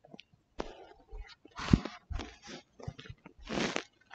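Fabric and cushions rustling and crackling close to the microphone in irregular short bursts, the largest about halfway through and near the end.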